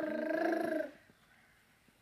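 A toddler's drawn-out, high-pitched wordless whine, rising and falling in pitch, that stops about a second in and is followed by near silence.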